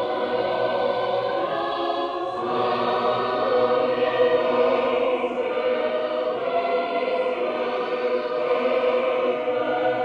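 A choir singing sacred music in several voices, holding long, sustained notes.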